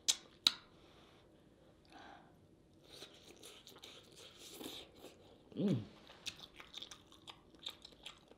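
Close-miked mouth sounds of eating a sauce-coated king crab leg: a few sharp clicks near the start, then a run of small wet smacks and chewing clicks through the second half.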